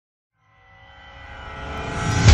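A cinematic riser for an intro: a sustained, many-toned drone fades in from silence about a third of a second in and swells steadily louder, building toward a hit.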